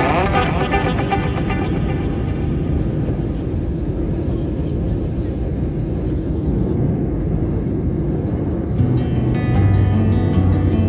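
Steady low roar inside the cabin of an Airbus A320-family airliner in flight: jet engine and airflow noise. Music fades out in the first second or two, and strummed guitar music comes in near the end.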